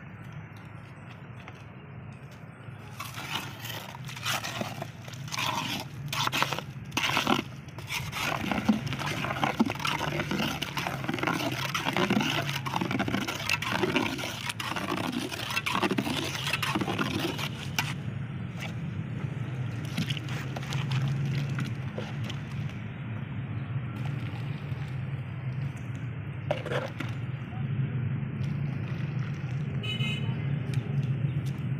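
Hand trowel scraping and scooping wet cement mortar and spreading it into a slab mould: a run of sharp scrapes and clicks from about three seconds in to about eighteen, then only a steady low hum with a few faint clicks.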